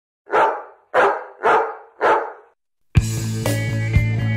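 A dog barking four times, about half a second apart, each bark short and fading fast. Music with a steady beat comes in near the end.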